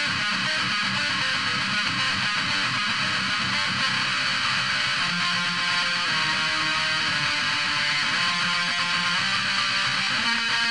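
Electric guitar played alone, a melodic metal lead riff with no rhythm guitar behind it: quick picked notes, moving to longer held notes about halfway through.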